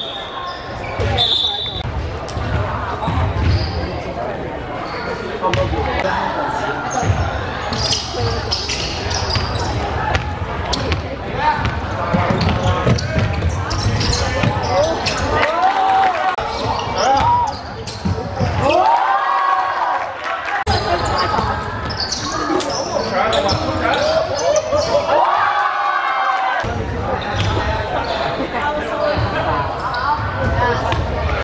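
A basketball bouncing on a hardwood gym floor during play, with players' voices calling out, all echoing in a large sports hall.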